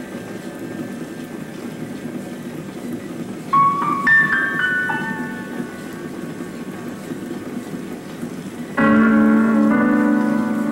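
Film score on piano, with a few notes about three and a half seconds in and a louder chord near the end, over a steady low background noise.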